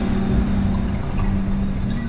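Ambient soundscape: a steady low drone held over a rumbling bed of wind noise.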